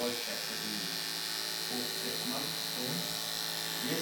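Electric hair clippers running with a steady buzz, with quiet voices talking underneath.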